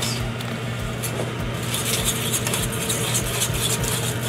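Thick cream soup being stirred in a metal pot, with scraping and clicking against the pot from about a second and a half in, over a steady low hum.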